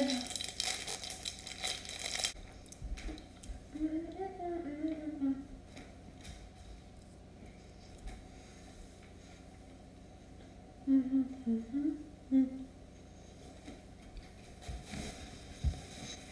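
A candy wrapper crinkles briefly at the start, then a girl hums softly with her mouth closed in two short, wavering phrases.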